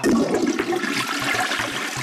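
Rushing water that cuts in suddenly and keeps going steadily.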